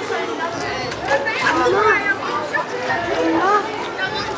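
Children's voices calling and chattering, no clear words, over outdoor street ambience.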